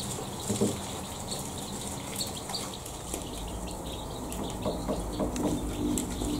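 A brood of grey partridge chicks feeding: scattered short, high cheeps and pecks over a steady hiss.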